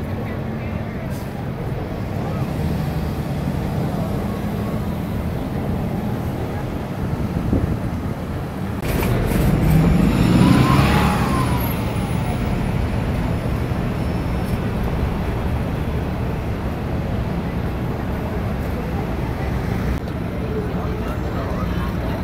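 City street traffic: a steady rumble of passing cars, with one vehicle passing close about nine to twelve seconds in, louder, its pitch rising and then falling as it goes by.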